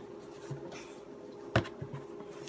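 Paper and card rustling as art prints and box packing are handled, with a sharp tap about one and a half seconds in.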